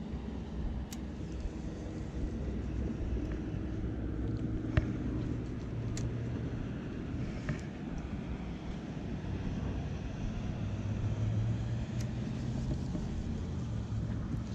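Boat engine running, a steady low rumble whose pitch lines swell and fade over several seconds, with a few short clicks.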